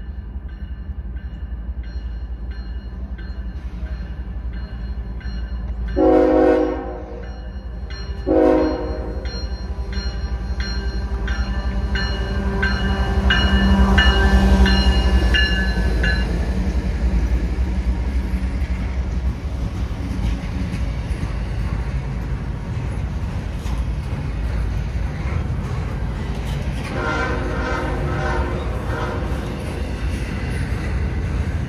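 CSX freight train passing at speed. Its diesel locomotives sound two horn blasts, a longer one about six seconds in and a short one about two seconds later, and the engines are loudest as they go by around the middle. A steady rumble and clatter of double-stack container cars rolling past follows.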